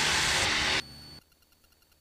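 Steady hiss-like cabin noise of a Cessna 172 in flight, with a low hum under it. It cuts off in two steps about a second in, leaving near silence until speech resumes.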